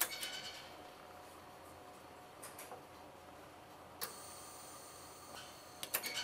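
Quiet handling sounds at a flexographic plate mounter as the printing plate is shifted under the plate clamp: a few sharp clicks, one about four seconds in and a couple near the end, with faint rustling between.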